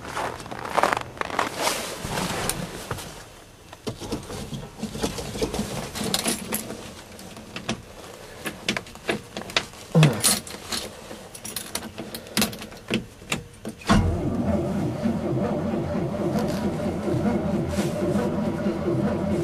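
Footsteps crunching in snow, a door thud about ten seconds in, and keys jangling. Then, about four seconds from the end, the 1972 GMC Sierra's starter cranks the cold-soaked engine steadily at −12 °F without it catching.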